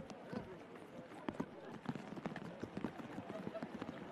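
Crowd chatter, several voices at once, with scattered sharp taps and clicks throughout.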